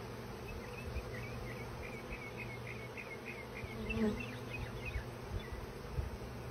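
A swarm of honey bees buzzing in a steady hum as the mass of bees crawls into a hive, with a faint run of quick high chirps over it through the first few seconds.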